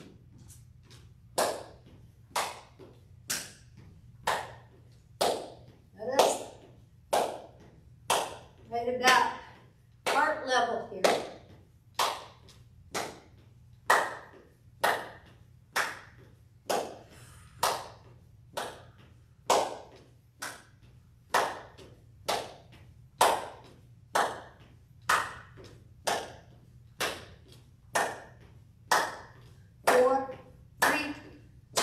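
Sharp taps about once a second, keeping an even beat, from a person doing a side-step walking exercise with arm swings, over a faint steady hum.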